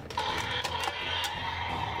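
Mattel Destroy N Devour Indominus Rex toy playing its electronic sound effect through its small built-in speaker, starting suddenly just after the start and holding steady.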